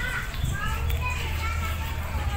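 Indistinct voices of people talking, children's voices among them, over a steady low rumble.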